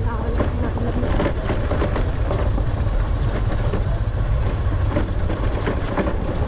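Motorcycle engine running while riding over a rough, rutted dirt track, with a low wind rumble on the microphone and scattered short knocks from the bumps.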